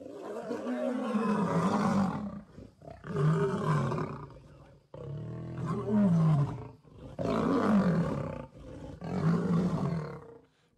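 Two male lions fighting, roaring at each other in five bouts of one to two seconds each, separated by short gaps, the pitch rising and falling within each bout.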